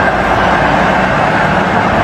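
Stadium crowd cheering in a loud, steady roar after a win.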